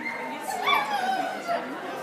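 A dog whining, one high call that rises and then falls in pitch near the middle, over background chatter.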